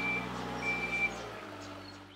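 Forklift reversing alarm beeping twice, high and steady, over the low running of its engine, fading away near the end.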